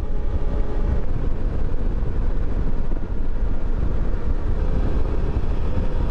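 Steady riding noise from a 2020 Suzuki V-Strom 650 motorcycle cruising along a mountain highway: a dense low rumble of wind and road noise, with the faint steady note of the V-twin engine underneath at an even pace.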